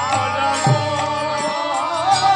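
A male lead singer chanting a Bengali nam kirtan through a PA microphone, holding notes that bend and waver in pitch. Underneath are steady sustained instrumental tones and low drum beats.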